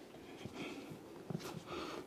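Faint movement sounds of a person getting down into a forearm plank on a foam exercise mat: soft rustling and a few light taps, with a couple of small clicks shortly after the middle.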